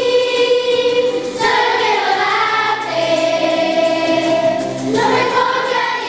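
Children's choir singing, holding long notes, with a new phrase starting about a second and a half in and another near the end.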